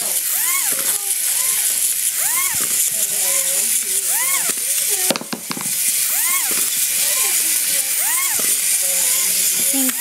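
Small battery toy robot that will not stop running: a steady high whir with a rising-and-falling chirp about once a second. A few sharp clicks come about halfway through.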